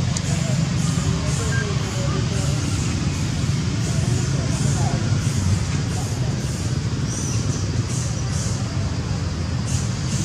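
A steady low rumble with faint, indistinct voices over it.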